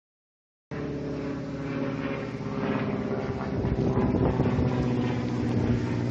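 A motor vehicle's engine running with a steady low hum at an unchanging pitch, growing slightly louder.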